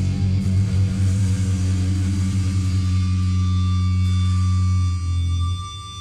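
Live heavy metal band holding a low sustained chord on bass and electric guitar while the cymbals ring out. The chord cuts off about five seconds in, leaving a thin steady high tone hanging.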